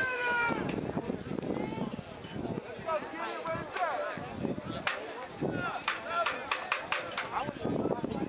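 Shouted voices from players and the sideline at a youth football game. A quick run of sharp clicks comes about three-quarters of the way through, with a few single clicks before it.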